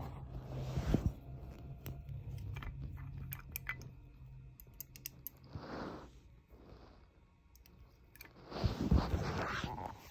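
Clicks and rustles of a perfume bottle being handled close to the microphone, then sniffing as someone smells the perfume: a couple of short sniffs around the middle and a longer, louder one near the end.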